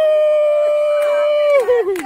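A long, high-pitched vocal cry held steady on one pitch, then wavering and sliding down in pitch near the end.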